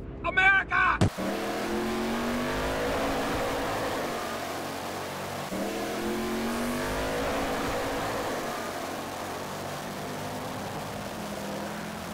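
Car engine accelerating on the road: its pitch climbs, drops at a gear change about five and a half seconds in, climbs again and then settles into steady cruising, over road and tyre noise. It is preceded by a brief, loud, warbling voice-like sound in the first second.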